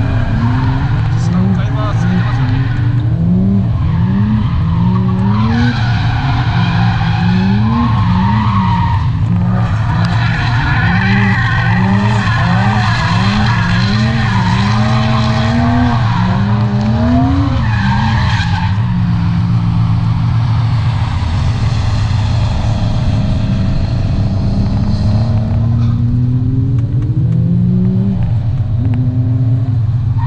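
Toyota Mark II sedan drifting: the engine revs rise and fall about once a second as the throttle is worked, with tyres squealing through the slides. About two-thirds of the way through the revving steadies, then climbs slowly near the end.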